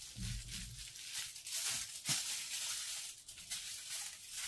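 Hair being worked with a comb: a run of short rustling swishes, a few each second, with a low rumble of handling near the start.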